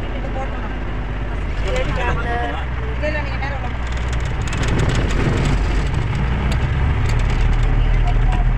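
Bus engine running with a steady low drone heard inside the passenger cabin, with light rattling, while passengers talk in the background.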